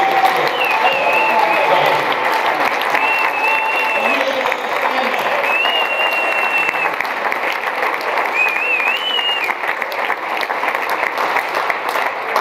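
Audience applauding in a long, steady round of clapping, with a few voices calling out over it.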